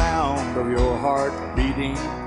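Country music recording in an instrumental stretch: a guitar melody with bending notes over a steady beat.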